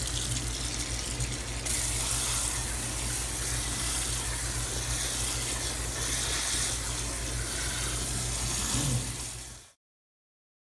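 Kitchen tap water running onto cooked spaghetti in a stainless steel colander in a metal sink: a steady rush that grows a little louder about two seconds in and cuts off suddenly near the end.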